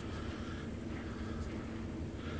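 Steady low background hum and outdoor noise with no distinct event.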